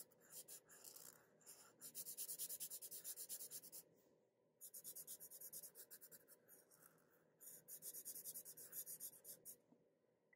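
Felt-tip marker scribbling rapidly back and forth on a paper card, colouring in, faint. It comes in four spells of quick strokes separated by short pauses.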